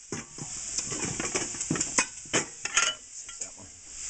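Dishes and utensils clattering in a plastic dish rack: a series of irregular clinks and knocks, over a steady faint sizzle from the frying pan.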